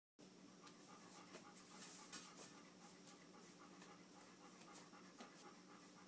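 Near silence: a faint steady hum with a dog panting softly.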